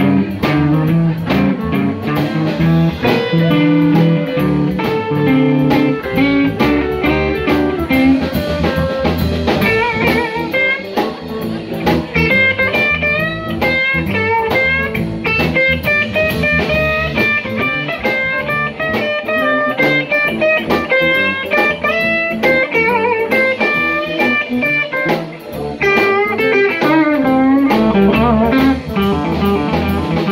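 Live blues band playing an instrumental passage: an electric lead guitar takes a solo with bent high notes over electric bass, a second guitar and a drum kit.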